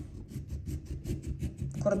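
Serrated kitchen knife sawing back and forth into a lime's peel: a quick run of short rasping strokes, about seven a second.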